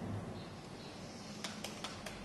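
Four quick clicks of the channel-3 switch on a Hobby King HK310 RC transmitter, about a fifth of a second apart in the second half: the four-click command for the light controller's hazard lights. A soft bump comes right at the start.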